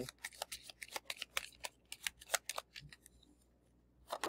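A deck of kindness cards being shuffled by hand: a faint, quick run of card snaps and clicks, about five a second, that stops near the end.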